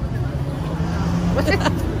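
Steady low hum of a motor vehicle engine running close by, with a brief voice about one and a half seconds in.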